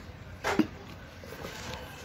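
A single short throat noise from a man, about half a second in, falling in pitch, over a faint steady hiss.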